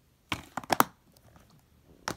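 Plastic DVD case being handled and closed: a quick run of sharp clicks about a third of a second in, then a few faint clicks.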